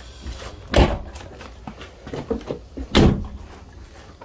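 Barn-find Jaguar XJ6 Series 1's car door being shut: two heavy thuds, about a second in and again about three seconds in.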